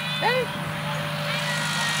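Tractor engine running steadily with a low, even hum.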